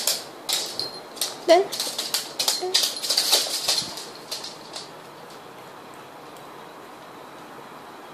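A small dog's claws clicking rapidly and irregularly on a hardwood floor as it hops about on its hind legs. The clicking stops about four to five seconds in.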